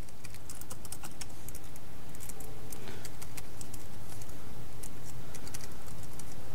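Typing on a computer keyboard: quick key clicks in short runs with brief pauses between them.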